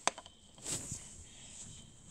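A single sharp plastic click as a toy barbecue's hinged plastic lid is opened, followed by faint handling noise.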